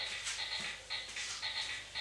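Faint, soft footsteps of a person marching on a foam floor mat in flat soft-soled shoes: light taps about twice a second.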